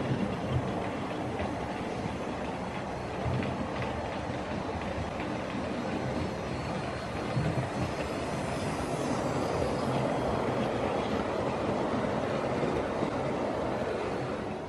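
OO gauge model trains running on the track: a goods train's wagons and brake van rolling past, then a Hornby SECR H class tank locomotive passing close by. The running noise is steady and grows loudest as the locomotive goes past, about two-thirds of the way in.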